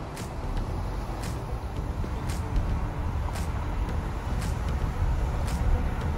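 Road noise of a moving car heard from inside: a steady low rumble of tyres and engine, with a faint high tick about once a second.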